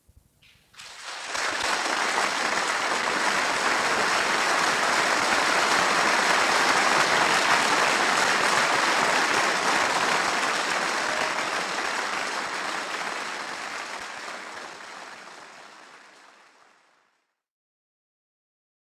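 Live concert audience applauding. The applause comes in about a second in, holds steady, then fades away and stops near the end.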